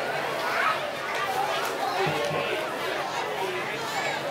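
Crowd of spectators chattering, many voices overlapping at once with no single clear speaker.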